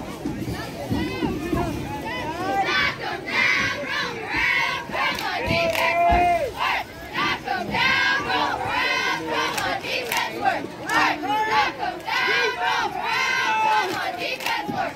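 Cheerleaders shouting a chant together in short, rhythmic shouts, about two a second, starting a few seconds in, over general crowd noise.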